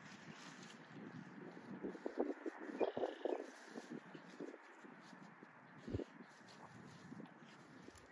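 A tracking dog sniffing hard along the grass, with a quick run of short sniffs about two to three and a half seconds in and another near six seconds, all faint.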